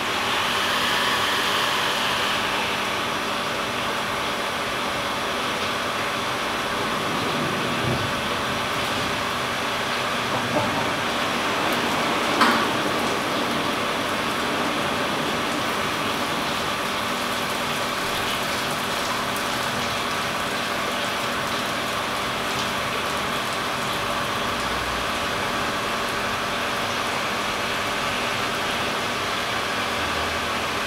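Brewery boil kettle of stout wort at a hard rolling boil, boiling over because it holds too much volume after oversparging: a steady rushing noise with a steady hum under it. A few small knocks, the clearest about twelve seconds in.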